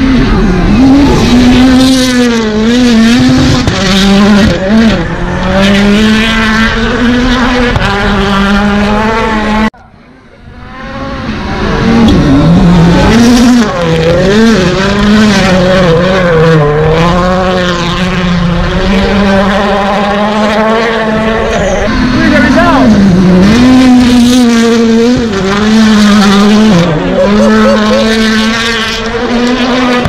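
Rally cars' turbocharged four-cylinder engines at full throttle on a gravel stage, the engine note climbing and dropping again and again through gear changes as the cars pass. The sound drops away sharply a little before ten seconds in, then builds back up.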